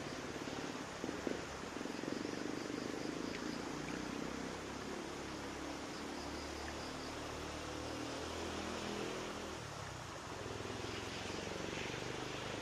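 Faint, steady hiss of shallow creek water with a low, wavering hum underneath, and two small clicks about a second in.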